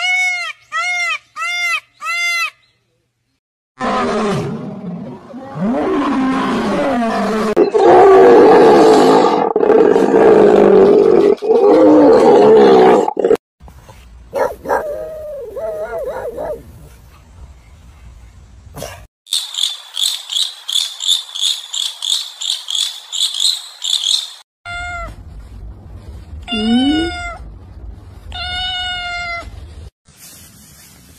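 A string of different animal calls. It opens with a peacock's four short, ringing calls in quick succession. A long, loud, rough animal call follows, then quieter calls and a high, rapid pulsing. It ends with a cat meowing several times.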